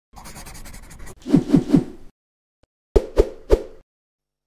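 Sound effects over an animated intro graphic: about a second of scratchy crackle, then three quick low hits that each drop in pitch, and after a short gap three sharper, ringing knocks about a quarter second apart.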